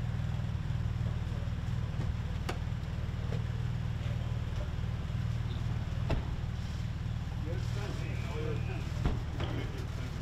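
Steady low rumble of an idling car engine, with a few sharp clicks scattered through and faint voices in the background about three-quarters of the way in.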